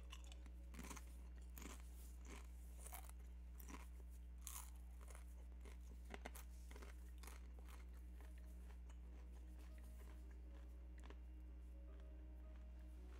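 Near silence: a steady low hum with faint, irregular crunching clicks scattered through it, thinning out toward the end.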